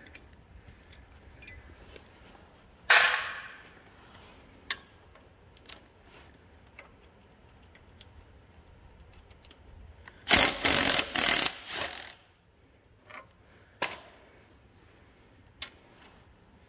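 A wrench working a rusty nut off a bolt on the front gear cover of a 1936 Caterpillar RD-4 engine: scattered small metal clicks and clinks, a sharp scrape about three seconds in, and a louder run of several clattering strokes from about ten to twelve seconds in.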